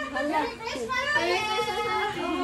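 Voices talking indistinctly, one of them high-pitched and drawn out in the second half.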